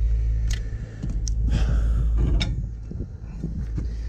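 Steel tyre lever and locking pliers clicking and scraping against a plough land wheel's rim as the tyre bead is worked back on: a few short, sharp metal clicks and a brief scrape over a steady low rumble.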